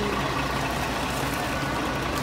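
Charter bus engine idling: a steady low hum.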